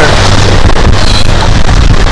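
Loud, steady wind noise on the microphone.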